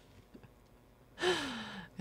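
A person's breathy sigh, starting just over a second in and lasting under a second, with its pitch falling.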